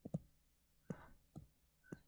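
Stylus tapping and clicking on a tablet's glass screen during handwriting: a handful of faint, sharp taps at irregular intervals.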